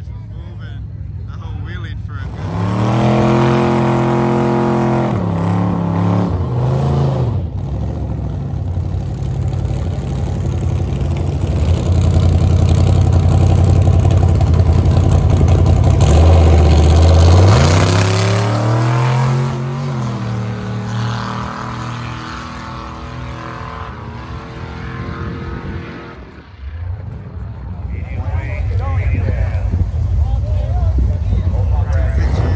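Drag cars' engines revving and accelerating hard, loud, with the engine pitch climbing and dropping several times. The sound starts about two seconds in and dips briefly near the end before engine noise returns.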